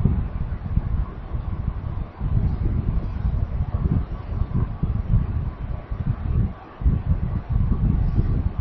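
Low, uneven rumble of microphone noise, with a faint steady hum above it.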